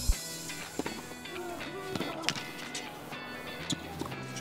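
Tennis ball being struck and bouncing in a baseline rally on a hard court, a sharp pop about every second or less, over steady background music.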